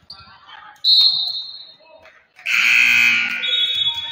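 Basketball shoes squeaking on a hardwood gym floor: a sudden loud, high squeak about a second in, and another thin high squeak near the end, with a loud shout in between.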